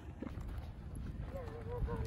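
Footsteps and rustling handling noise while walking, with a person's voice starting a wavering, drawn-out non-word call about a second and a half in.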